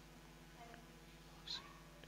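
Near silence with a faint low hum, and a brief faint squeak from a marker writing on a whiteboard about one and a half seconds in.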